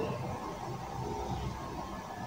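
A pause in speech with only background noise: a steady low rumble and a faint hiss.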